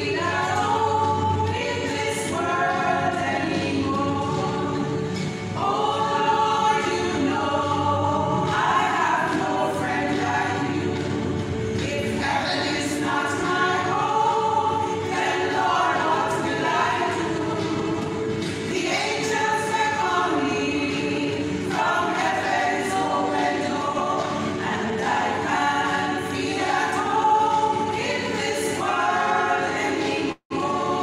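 Women's church choir singing together in harmony, one phrase running into the next.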